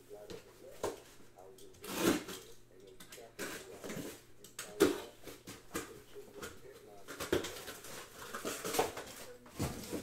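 Irregular knocks and clatter of objects being handled on a table, the loudest about five seconds in, over a steady low electrical hum.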